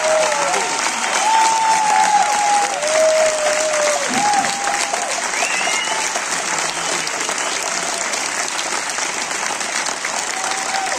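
Concert audience applauding steadily, a dense even clapping that eases slightly after the first few seconds.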